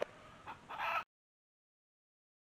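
Chickens clucking: a short call about half a second in, then a longer, louder one, the sound cutting off suddenly at about a second in.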